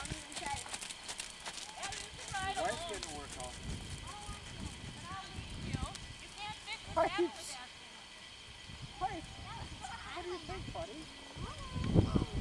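Faint, distant voices of people chatting, with a horse walking on the arena sand. A quick run of light clicks in the first few seconds.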